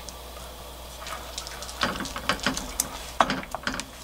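Wooden spoon knocking and tapping against the side of a metal pot as a spoonful of cold cooked rice is shaken off into broth. A quiet moment comes first, then a quick run of light clicks and knocks from about two seconds in.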